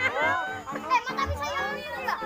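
A crowd of children chattering and calling out over one another, with music playing in the background.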